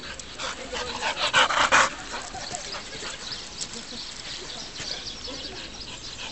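Young golden retriever making short whines and yips, loudest about a second in, with a person's voice mixed in.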